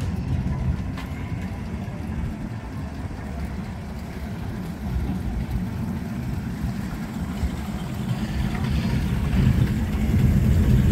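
Engine of a 1932 Ford three-window coupe hot rod running with a low rumble as it rolls slowly closer, growing louder over the last couple of seconds as it reaches and passes close by.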